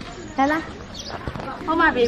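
Two short bits of voice, one about half a second in and one near the end, over steady outdoor background noise.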